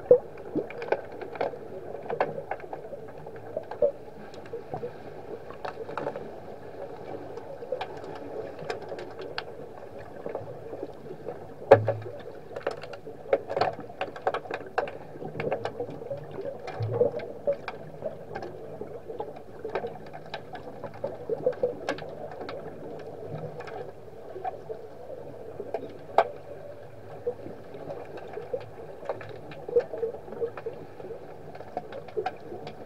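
Muffled underwater sound of a pool during an underwater hockey game: a steady wash with scattered sharp clicks and knocks from players, sticks and puck. The loudest knock comes just under twelve seconds in.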